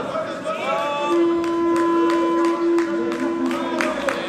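An electronic match-timer buzzer sounds one steady, flat tone for nearly three seconds, starting about a second in, signalling that time is up in the bout. Scattered hand claps from the crowd grow toward the end, over crowd voices.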